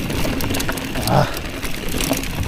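Mountain bike rolling fast down a dirt singletrack: steady tyre and wind rumble, with many small clicks and rattles from the bike over the bumpy ground.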